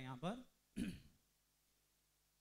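A man's voice finishes a word, then a brief throat clearing just under a second in.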